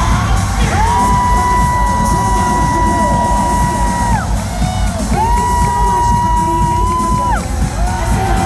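Live concert music: a heavy bass beat with two long held high notes, each about three seconds, and a crowd cheering and whooping over it.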